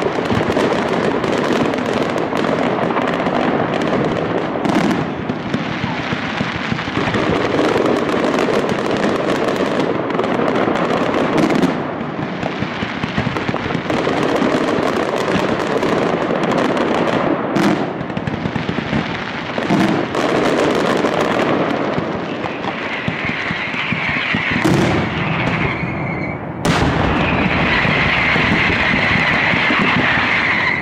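Aerial mascletà: a dense, unbroken barrage of firecrackers bursting overhead, hundreds of bangs run together into one continuous crackling roar. A high hiss rises over the bangs in the last several seconds.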